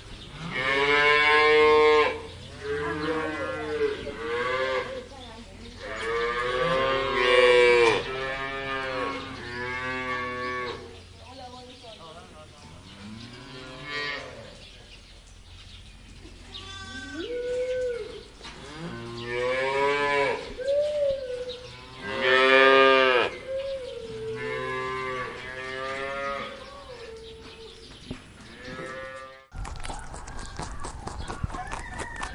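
Cows mooing: a series of long moos one after another, some deeper and some higher-pitched, from more than one animal. The calls stop abruptly just before the end.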